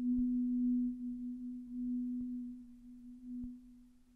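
Marimba holding one low note, struck with yarn mallets: a pure tone that swells and fades a few times and dies away near the end.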